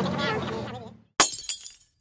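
Talk and background music fade out, then glass shattering: a sharp crash a little past a second in, a second smaller crash just after, dying away quickly.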